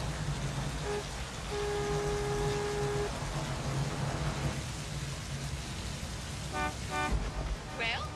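A car horn gives a short tap, then a held blast of about a second and a half, over steady rain falling on the stopped cars; two short toots follow near the end.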